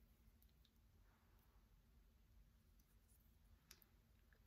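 Near silence: faint room tone, with a few soft clicks, the clearest shortly before the end.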